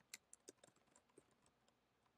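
Faint computer keyboard typing: a quick, uneven run of soft key clicks.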